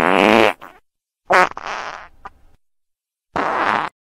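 Three short fart sounds, each under a second, with silence between them.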